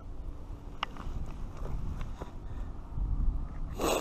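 Wind rumbling on a body-worn action camera's microphone, with scattered light clicks and rustles of hands handling line and fish, and one short, loud rustle just before the end.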